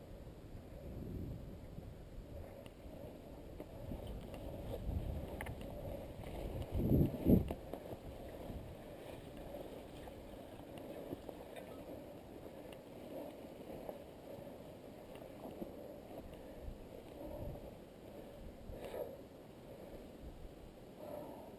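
Low, uneven rumble and rustle of a camera being carried along a grassy trail, with a loud dull bump about seven seconds in.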